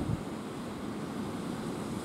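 Small waves washing onto a sandy beach, with steady wind rumbling on the microphone.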